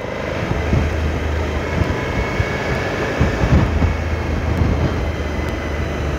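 Suzuki V-Strom's V-twin engine running at road speed, with wind rushing over the microphone, growing louder over the first second and then steady.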